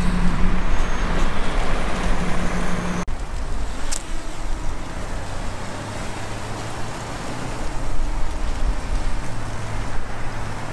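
Road traffic: steady noise of passing cars with a low engine hum. About three seconds in the sound cuts abruptly to a quieter traffic background with a deeper hum.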